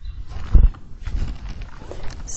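A few dull low thumps with rustling noise between them, the loudest thump about half a second in.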